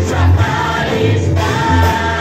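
Cebuano praise and worship song sung by a group led by a singer on a microphone, over amplified accompaniment with a strong, steady bass.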